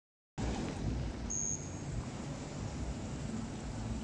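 Steady ambient noise of a covered swimming-pool venue, mostly a low rumble, starting just after a moment of silence. A brief high-pitched tone sounds about a second and a half in.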